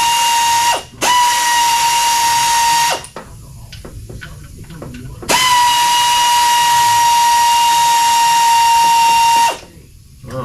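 Pneumatic ratchet running free as it spins out bell housing bolts: a steady whine over air hiss that picks up speed at each start. It runs three times: briefly, then for about two seconds, then for about four seconds, with small clicks and knocks in the gap between the last two runs.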